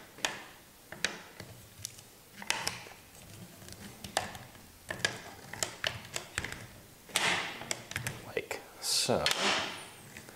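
Handling noise from a Beretta Model 1931 semi-automatic rifle as its short-recoil barrel is worked back and forth in its brass sleeve: scattered light metallic clicks and knocks, with two longer rustles about seven seconds in and near the end.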